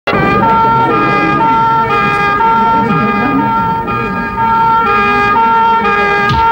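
Two-tone siren, a high and a low note alternating about every half second, opening a pop song before the beat comes in.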